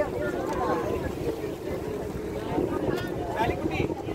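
Steady engine rumble and wind on the open deck of a passenger ferry, with passengers chatting around the microphone.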